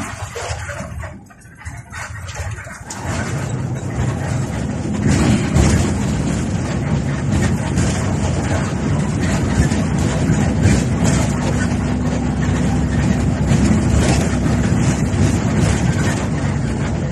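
Coach bus diesel engine and road noise heard from the driver's seat while driving, getting louder about three seconds in and then running steadily with a low engine hum.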